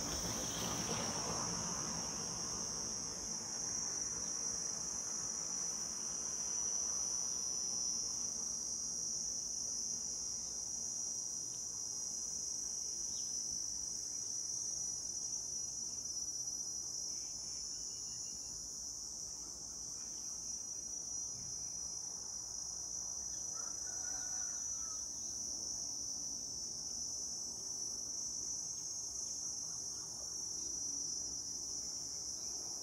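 A steady, high-pitched insect chorus, droning without a break.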